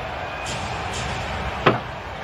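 Basketball game sound during live play: a steady bed of arena music and crowd noise, with the faint thuds of a basketball being dribbled on the hardwood. A short, sharp sound stands out about three-quarters of the way through.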